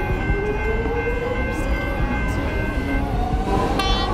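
Alstom X'Trapolis 100 electric train accelerating: a whine from the traction motors rises steadily in pitch over a heavy low rumble of the running gear.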